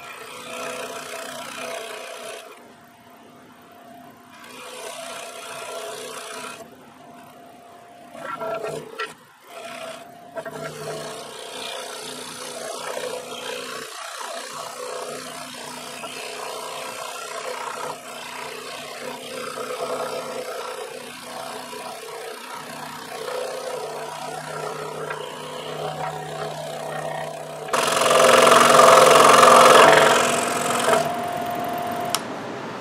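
Scroll saw running with a #12 blade, cutting through a 1.5-inch-thick old pine blank wrapped in packing tape: a steady motor hum with the rasp of the reciprocating blade in the wood, rising and falling as the work is fed. It gets much louder for the last couple of seconds.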